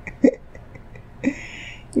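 A woman's short hiccup-like vocal catch, then a second brief vocal sound about a second later followed by an audible breath, just before she speaks.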